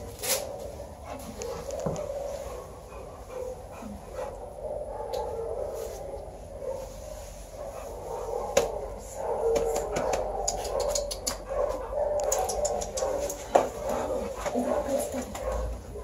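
Large pit bull-type dog panting as it stands and moves about a small room, with short sharp clicks as it moves that come thicker in the second half.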